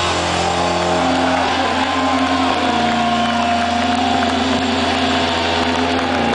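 Live rock band's distorted electric guitar and bass holding long, droning notes with the drums dropped out, a high sustained guitar note ringing over a steady low rumble.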